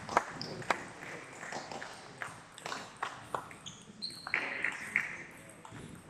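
Table tennis rally: sharp clicks of the ball off the bats and the table, about two a second, with a brief high squeak about four seconds in.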